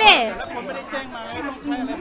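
Only speech: people talking and chatting, with one voice falling sharply in pitch at the start, then quieter talk running on.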